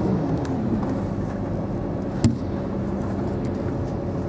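Steady engine and road noise inside a moving road vehicle, with a steady hum underneath and one sharp click about two seconds in.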